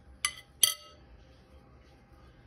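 Two sharp clinks of a penny against a plate, under half a second apart, the second louder and ringing briefly.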